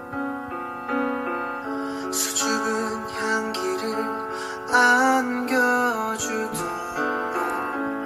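Slow piano ballad: sustained piano chords, with a singing voice coming in about halfway through.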